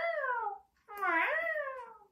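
Cat meowing: the end of one meow at the start, then a second full meow that rises and falls in pitch.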